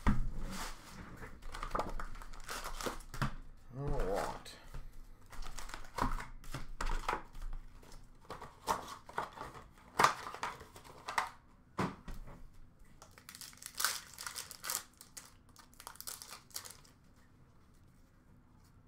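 Plastic wrappers of Upper Deck hockey card packs crinkling and tearing as the packs are handled and ripped open, in an irregular run of crackles that thins out and stops shortly before the end.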